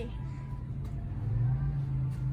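A low, steady rumbling hum of store background noise that grows a little louder past the middle, with faint thin tones above it.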